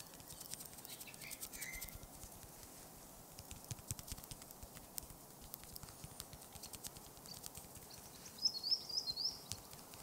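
Soft, irregular tapping clicks. A few bird chirps come about a second in, and a quick run of high bird calls near the end is the loudest sound.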